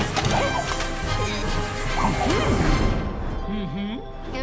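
Cartoon crashing and clattering sound effects mixed with background music, with many sharp hits that thin out about three seconds in. A short gliding vocal sound follows near the end.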